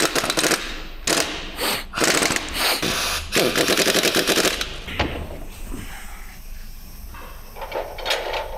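Impact wrench rattling in several short bursts on the crankshaft main bearing cap bolts of a stripped Hyundai G4KD engine block. The bursts stop about four and a half seconds in, leaving quieter workshop noise with a single knock.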